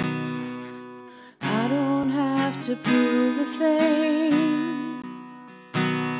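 A woman sings a slow worship song to her own acoustic guitar. A strummed chord rings and fades in the first second or so, then her sung notes, with vibrato, carry on over the guitar, and a new strum comes in near the end.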